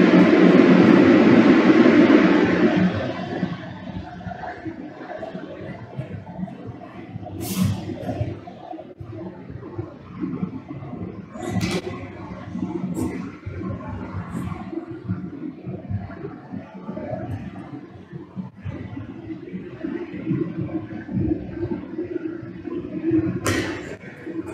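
A loud rushing noise that dies down about three seconds in, then a quieter low steady background with a handful of sharp taps as hand positions are marked out with chalk on a rubber gym floor.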